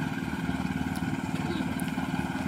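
Small petrol engine of a power rice thresher running steadily, with an even, rapid pulse.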